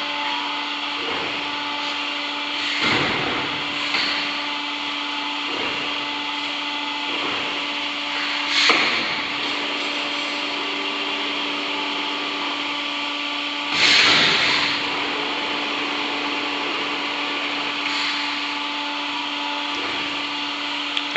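Montorfano GE14 CNC wire bending machine running: a steady machine hum with a constant tone, broken by three louder bursts of hiss, each about a second long and a few seconds apart.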